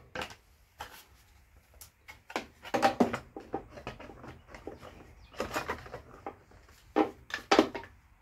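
Black plastic engine shroud of a Briggs & Stratton mower engine being pushed back into place by hand: irregular knocks and clicks of plastic on plastic and metal.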